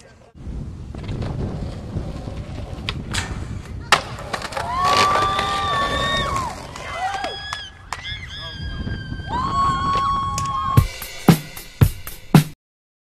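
Skateboard wheels rolling on concrete, with a couple of sharp clacks of the board. Sustained high tones come in over the rolling, and a quick run of sharp clicks follows near the end.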